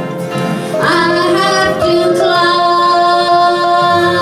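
A woman singing a slow country gospel song, holding long notes, with a small country band and an upright bass accompanying her.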